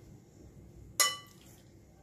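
Metal kitchen tongs clink once, sharply, against a ceramic bowl while picking up a marinated chicken wing, about a second in, with a short ringing tail.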